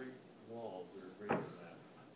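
A person speaking briefly and softly in a small room, with a single sharp click or knock about a second and a quarter in. No horn is being played.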